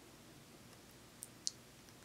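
Two short, sharp clicks about a quarter second apart, a little past halfway, over faint steady room noise.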